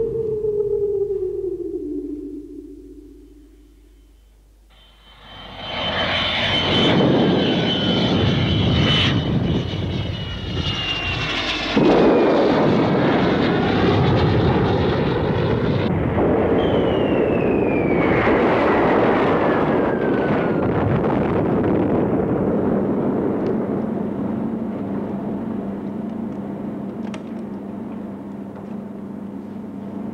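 A loud jet-aircraft roar with whining tones that fall in pitch, like a jet flying past. It comes in about five seconds in, after a low musical tone dies away, and slowly fades toward the end.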